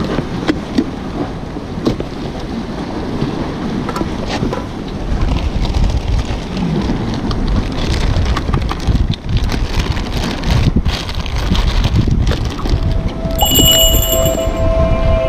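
Wind buffeting the microphone over the wash of sea waves against the breakwater, with plastic bags rustling and short clicks as bait bags and gear are packed into a tackle box. The rumble of the wind grows heavier about a third of the way in. Near the end, a chime of music begins.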